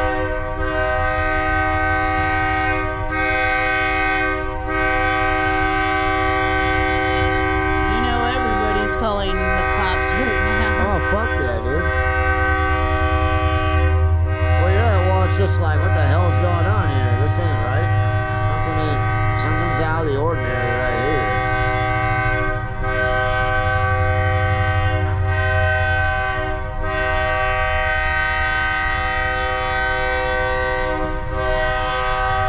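Locomotive air horn sounding a chord of several steady tones in long, loud blasts with only brief breaks, over a low engine rumble. In the middle, a wavering voice-like sound rises and falls over the horn.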